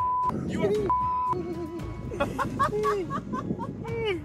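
A censor bleep sounds twice, a steady beep of about half a second each, over people's voices. From about halfway through, young men are shouting and yelling.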